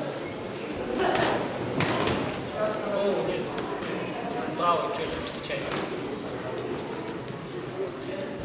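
Men's voices shouting in a large hall during a boxing bout, with a few short thuds from the ring.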